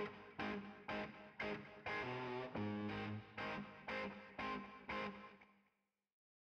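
Short outro music on a guitar with effects, chords struck about twice a second, fading out shortly before the end.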